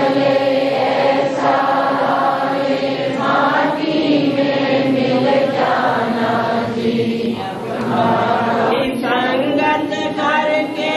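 A group of voices singing a chant together, in long held phrases with short breaks between them.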